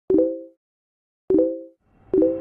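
Two identical pop-up sound effects about a second apart, each a sharp pop followed by a short ringing chime that dies away quickly, marking text popping onto the screen.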